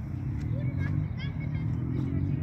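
Outdoor ambience: a low, steady rumble with murmuring voices, and a few short high chirps about a second in.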